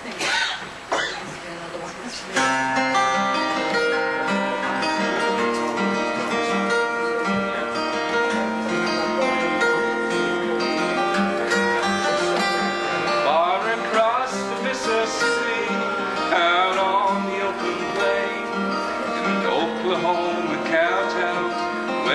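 Solo flat-top acoustic guitar playing the introduction to a song, starting about two seconds in, with a few notes that glide in pitch later on.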